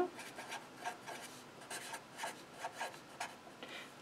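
Sharpie felt-tip marker writing on paper: a run of short, faint, irregular strokes as words are written out.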